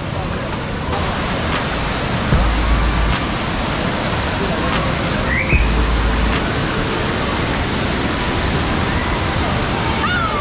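Rushing water of a warm spring-fed river and waterfall: a loud, steady hiss. Brief low rumbles come about two and a half and five and a half seconds in.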